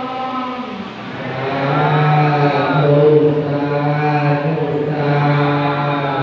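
Buddhist chanting by low male voices, held on a steady low pitch in long sustained lines, growing louder about a second in.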